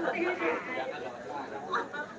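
Quiet, indistinct speech, much lower than the talk on either side.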